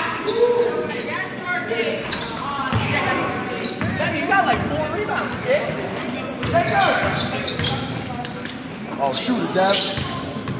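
Basketball bouncing on a hardwood gym floor as players run the court, with voices of players and spectators calling out, echoing in a large gymnasium.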